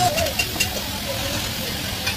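Steady mechanical running noise, like a motor idling, with a voice briefly at the start.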